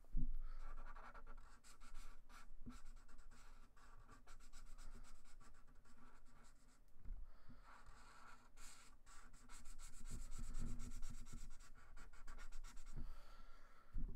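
Thick Sharpie permanent marker drawn across paper in short repeated strokes, filling in solid black areas of an ink drawing. A brief low knock comes right at the start.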